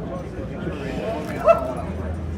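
A single short, high yelp like a dog's, voiced by a person, about one and a half seconds in, over background talk.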